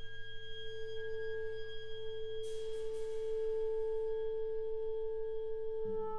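A violin holds one long, very pure note after gliding up to it, with a hiss over the note for a second or so in the middle. Near the end other instruments come in with lower notes.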